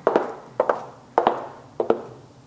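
Footsteps of a person walking indoors: four sharp steps, about one every 0.6 s, each with a short echo.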